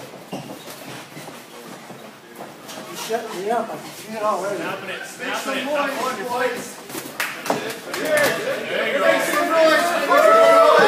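Spectators talking and shouting over one another in a large gym hall, growing louder near the end, with a few sharp knocks among the voices.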